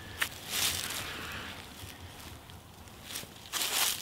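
Feet shifting and crunching on dry fallen leaves, with brief swishes of two kali sticks being swung in a continuous double-weave pattern. There is a sharp tick just after the start and a stronger swish or rustle just before the end.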